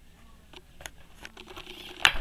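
Faint handling noise: a few light, scattered clicks over a low room hum.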